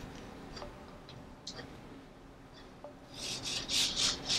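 Hands handling a cotton T-shirt on a table: a few faint taps, then from about three seconds in a run of fabric rustling and rubbing as the curtain-tape cords are pulled to gather the cloth.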